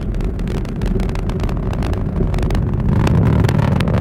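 Atlas V rocket's RD-180 first-stage engine rumbling with a ragged crackle during ascent, growing louder about three seconds in.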